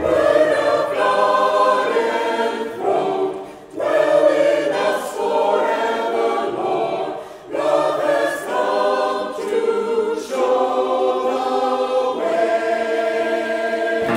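Mixed choir of men's and women's voices singing a Christmas anthem unaccompanied, in phrases with short breaks about four and seven and a half seconds in.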